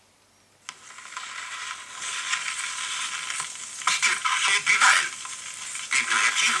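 Stylus set down on a small record with a sharp click about a second in, then crackling surface noise from the spinning disc, growing louder and thin, with little bass.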